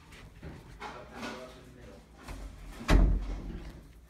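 Faint voices, then one loud, dull thump just before three seconds in.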